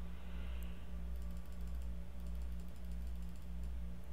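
Faint clicking at a computer: a few light clicks over a steady low hum.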